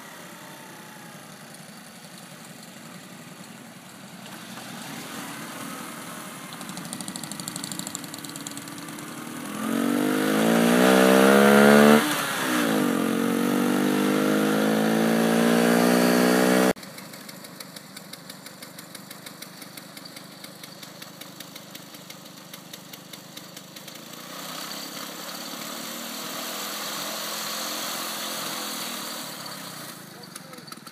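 Small motorcycle engine running under way, the 1980 Honda C70's single-cylinder four-stroke, climbing in pitch as it accelerates, dropping once as it shifts up and climbing again before cutting off suddenly. After the cut a quieter engine runs steadily with a regular ticking.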